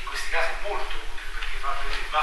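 A man speaking, lecturing over a steady low electrical hum.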